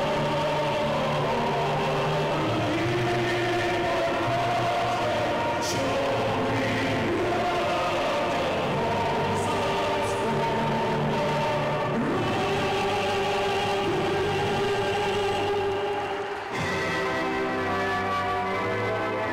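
A national anthem sung by a choir over instrumental backing, played in the hall. It breaks off about 16 seconds in and another piece of music begins.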